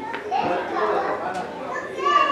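Speech only: fainter voices of class members answering a question, away from the microphone.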